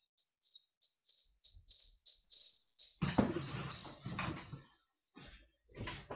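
A high, even chirp repeating about three times a second, like a cricket, swelling and then fading out about five seconds in. Faint muffled low noise sits underneath in the second half.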